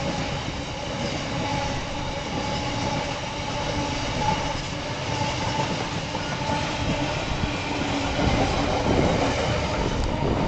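Freight train of empty flat wagons rolling past, a steady rumble and clatter of wheels on the track.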